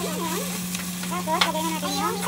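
Taro leaves with onion and garlic frying in a pan, sizzling as they are stirred and scraped with a plastic slotted spoon. A steady low hum runs underneath.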